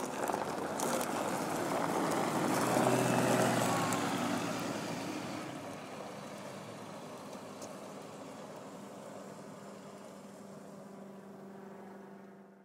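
A diesel city bus drives off over gravel. The engine and the crunch of its tyres grow loudest about three seconds in, then fade steadily as it moves away, leaving a low, steady engine hum.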